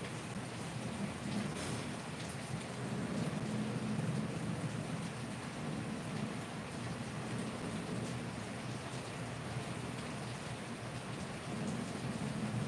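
Steady rushing noise with a low rumble underneath, even throughout, with no distinct events.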